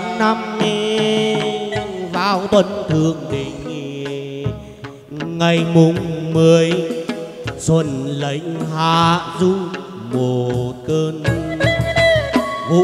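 Live chầu văn ritual music: a plucked đàn nguyệt (moon lute) carries the melody over drum and clapper percussion, with a wavering, heavily ornamented melodic line.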